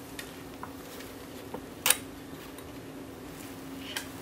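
Small clicks and taps from gloved hands adjusting the sample stage of an infrared microscope, with one sharp click about two seconds in, over a steady low hum.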